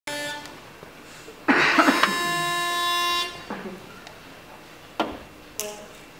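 A pitch pipe giving the starting pitch: a short note right at the start, then a loud, steady note held for about a second and a half. Two light clicks follow near the end.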